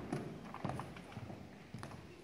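Footsteps of several people walking off a stage and across a hall floor: a string of short, irregular knocks.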